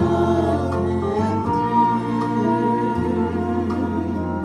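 A small vocal group of two women and a man singing a gospel song together through microphones, holding long sustained notes.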